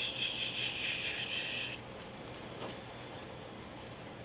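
Paper pages of a book being handled and turned, a short scratchy rustle that stops before halfway through, followed by a faint tick.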